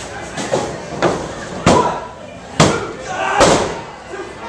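Sharp slaps and thuds on a wrestling ring's canvas-covered mat, about five in all, the loudest two in the middle.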